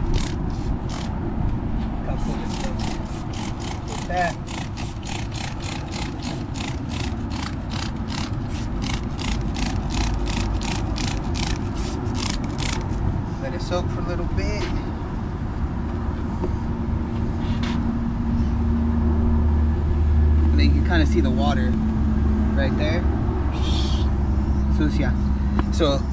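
Trigger spray bottle squeezed over and over, about three quick hissing sprays a second, as degreaser is sprayed onto a wet truck tire and rim; the spraying stops about twelve seconds in. A steady low hum comes in later.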